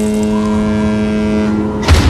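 Soundtrack sound design: a single held, steady synth note over a rushing noise, then a heavy bass hit just before the end.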